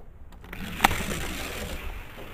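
A single sharp plastic click about a second in as the starting gate of a Hot Wheels gravity-drop track is released. A steady rolling noise follows as the die-cast car runs down the plastic track.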